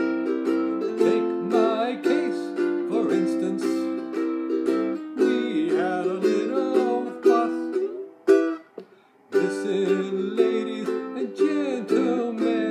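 Ukulele strumming chords in a song arrangement, stopping briefly about eight and a half seconds in and then picking up again.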